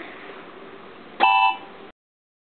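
Electronic keyboard sounding several keys struck together about a second in, a short chord of steady tones that fades quickly before the sound cuts off suddenly.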